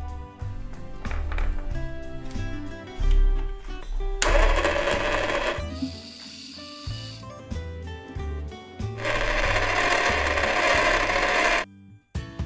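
Background music plays throughout, and the small battery-powered motor of a toy pottery wheel whirs twice over it: for over a second about four seconds in, and for nearly three seconds near the end.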